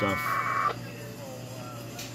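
A short packet-radio data burst, the warbling two-tone 1200-baud AFSK of an AX.25 frame, comes from a radio's speaker and lasts about half a second near the start. It is part of the handshake traffic of a Winlink connection through a digipeater. A low steady hum sits underneath.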